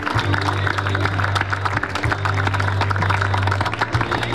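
Crowd applauding, a dense patter of many hands clapping, over background music with a steady low bass note.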